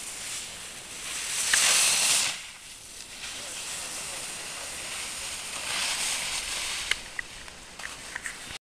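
Skis carving on snow: the edges hiss loudly as the skier turns close by about one and a half seconds in, then again in a longer swell around six seconds, with a few faint clicks near the end.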